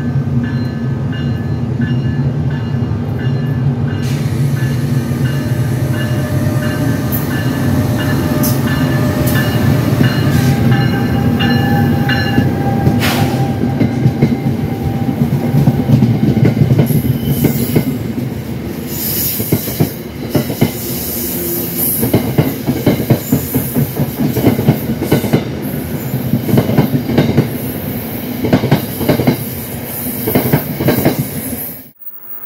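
NJ Transit ALP-46A electric locomotive and its bilevel coaches rolling past at close range. At first there is a steady hum and whine from the locomotive. From a little past halfway the wheels click and knock over the rail joints in a quick, uneven rhythm, with a high hiss above.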